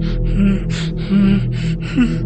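Eerie sustained low music drone with quick panting, gasping breaths over it, about four a second.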